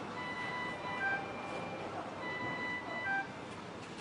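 Intensive care monitor alarm beeping: a long tone followed by a short tone, the pattern repeating about every two seconds over a low hiss of room noise.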